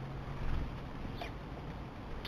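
Eurasian magpie pecking at seed on a wooden feeding table: one short sharp tap about a second in, over a steady hiss and a low hum that stops about half a second in.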